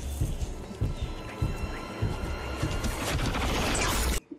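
Film soundtrack: a dense, tense score with faint held tones and repeated low thuds, swelling near the end and cutting off abruptly.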